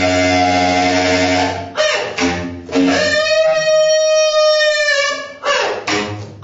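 Bass clarinet playing held notes: a low, reedy note for the first second and a half or so, then a few short notes, then one higher note held for about two and a half seconds that cuts off shortly before the end.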